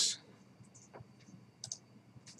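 A few faint, irregular clicks from a computer mouse while a web page is scrolled, the loudest a quick double click near the end.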